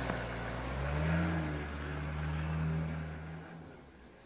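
A motor vehicle's engine running with a low, steady hum. It swells slightly and then fades away near the end.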